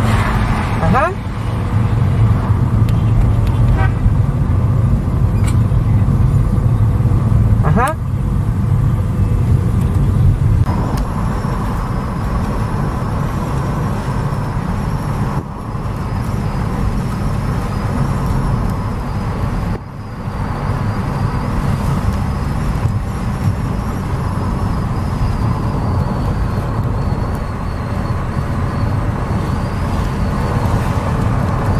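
Car engine and tyre noise heard from inside the cabin while driving on a highway: a steady low rumble that eases a little about ten seconds in. There are two short rising sounds about a second in and about eight seconds in.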